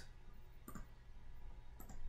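Two faint computer mouse clicks about a second apart, over a low steady hum.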